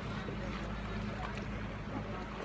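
Steady low hum of boat traffic on a canal, with faint voices in the background.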